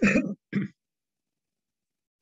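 Two short non-speech vocal sounds from a person in quick succession, heard over a video-call line, after which the audio goes silent.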